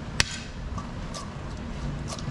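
A metal utensil clinking against a stainless steel mixing bowl as a chopped salad is stirred: one sharp clink just after the start and a fainter one about a second later.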